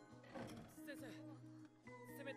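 Faint anime soundtrack: soft background music with a character's dialogue in Japanese over it.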